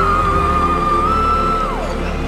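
Male singer holding a very high, sustained note with a slight waver, then sliding down sharply near the end, over backing music.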